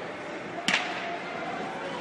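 One sharp metallic clank about two-thirds of a second in, from loaders changing the plates and collars on a competition barbell, over low background chatter.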